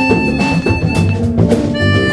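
Live jazz band playing: a harmonica holds sustained melody notes over drum kit, bass and guitar accompaniment.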